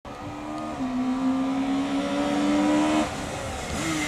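Honda Civic rally car's engine at high revs, coming closer. Early on the pitch drops quickly as it shifts up, then the revs climb steadily. About three seconds in it suddenly lifts off the throttle, and it gets back on the power near the end.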